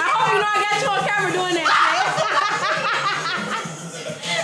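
Several women laughing and snickering, with bits of chatter, over hip-hop-style music playing in the room.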